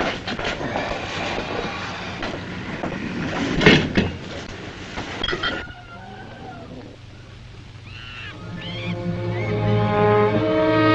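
Old film soundtrack: noisy clattering with many knocks and one loud crash a little under four seconds in, cutting off sharply just before six seconds. Then a few chirping calls, and orchestral strings swelling in near the end.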